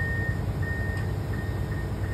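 Komatsu PC490HRD-11 demolition excavator's diesel engine running with a steady low rumble while its warning alarm beeps about twice a second in a single high tone, the beeps fading to faint pips after about a second.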